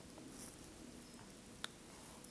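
Faint room tone with a few soft, short clicks of computer keyboard keys being pressed, the clearest one about three quarters of the way through.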